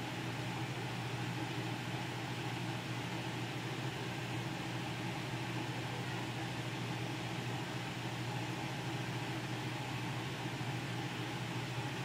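Steady low hum and hiss of room tone, with no distinct events.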